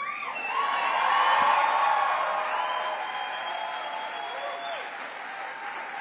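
Large crowd cheering and applauding, with individual whoops held above the din; it swells about a second in and slowly dies down.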